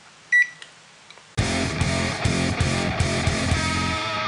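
A single short, high electronic beep from a digital multimeter as its dial is turned to continuity mode, then from about a second and a half in, rock guitar music.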